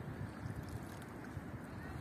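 Wind buffeting the microphone in uneven low rumbles over a steady outdoor hiss of open-air ambience.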